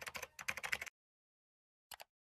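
Computer keyboard typing, a quick run of keystrokes for about the first second, then a single mouse click near the end.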